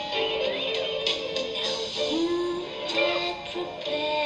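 Slow nightclub song: a singing voice holds long, steady notes over a band accompaniment.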